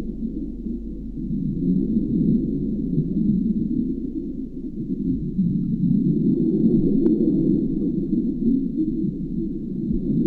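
Muffled, steady low rushing of underwater ambience, with a faint steady high whine over it and a single sharp click about seven seconds in.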